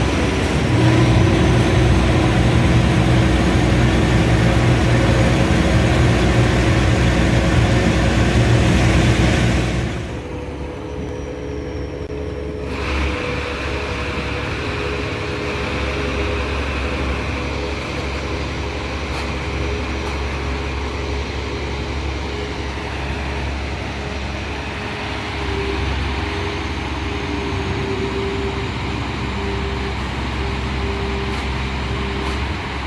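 Engine and machinery of a water weed harvester running steadily. About ten seconds in the sound drops abruptly to a quieter steady hum with a higher held tone.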